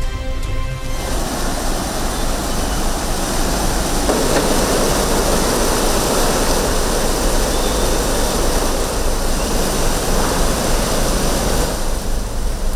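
Floodwater rushing over a river weir: a loud, steady rush of water that thickens about four seconds in. A music bed ends about a second in.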